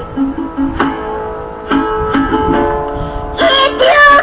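Acoustic guitar played alone, single picked notes and chords ringing on between sung lines. A woman's singing voice comes back in near the end.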